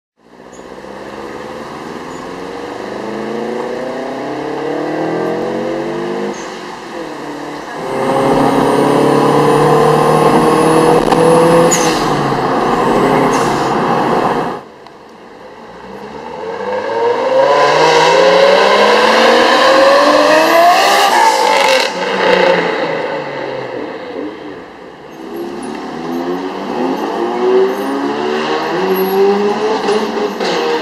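Performance car engines accelerating hard, several times over: each engine note climbs in pitch through the gears, with a sudden cut about halfway through where one clip gives way to the next.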